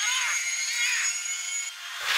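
Film sound effects of a small jet plane in flight: a steady high engine whine over rushing noise, thin and without any low end.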